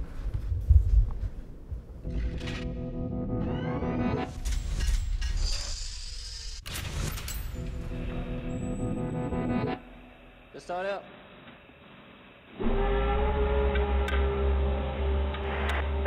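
Formula 1 pit-stop soundtrack with music: engine sound that rises in pitch about four seconds in, then high whirring and a sharp click. It goes quieter for a couple of seconds, then a steady low hum with radio-like narrow sound sets in near the end.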